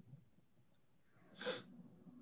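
Near silence on a video call, broken about one and a half seconds in by one short, breathy burst of noise from a person into a microphone.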